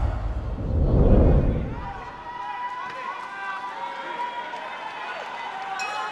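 A deep whooshing rumble, the sound effect of the title logo, swells about a second in and fades out by two seconds. After it comes the hubbub of voices from the crowd and cornermen around an amateur fight ring.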